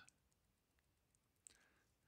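Near silence, with one faint, short click about one and a half seconds in as a cardboard coin flip is turned over in the fingers.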